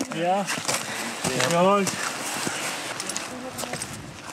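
Two brief bits of talk from people on the trail, in the first two seconds, over steady outdoor hiss with a few faint clicks.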